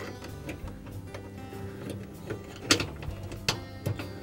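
Soft background music with held tones, and a few light clicks about two-thirds of the way in and near the end as the thermostat and its mounting clip are handled on the copper suction line.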